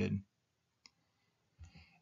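A pause in a man's speech: his voice trails off at the start, then near silence broken by a single faint click about a second in and a brief faint noise just before the voice returns.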